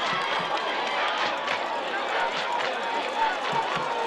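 Football stadium crowd: many voices talking and calling out at once in a steady, overlapping hubbub.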